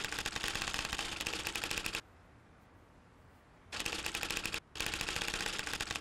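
Rapid typewriter keystrokes clattering in runs: about two seconds of fast typing, a pause of nearly two seconds, then two shorter runs with a brief break between them.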